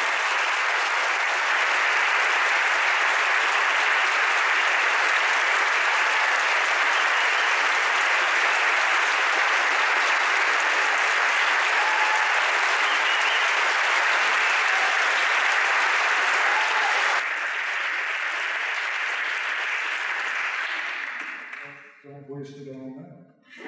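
An audience applauding steadily to welcome speakers to the stage, a little softer in the last few seconds, then dying away at the end.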